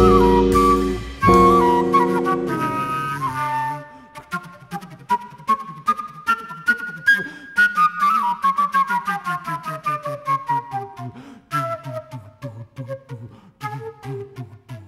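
Jazz band holding a sustained chord with flute on top, which stops about three and a half seconds in. A concert flute then plays alone: a run of quick, clipped, staccato notes that fall in pitch through the middle.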